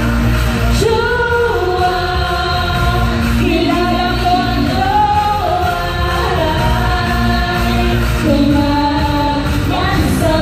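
Live pop music through a concert sound system: female voices singing into microphones over a loud, bass-heavy backing track.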